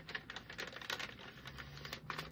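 Sheets of letter paper being handled and shuffled: a quick, irregular run of small paper crackles and clicks, over a faint steady low hum.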